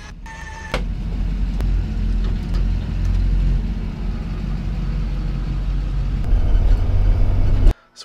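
Electric tongue jack on a travel trailer running: a steady low motor hum that starts about a second in and grows a little louder toward the end, then cuts off.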